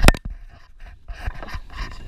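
A sharp knock right at the start, then light scraping and rubbing as hands work around the tractor's PTO lever and linkage.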